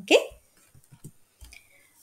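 A short rising vocal sound from a voice right at the start. Then it is nearly quiet, with a few faint clicks and a soft low thump about one and a half seconds in.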